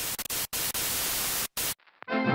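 Burst of harsh TV-style static from a glitch transition sound effect. It breaks off twice for an instant and cuts out suddenly just before the end.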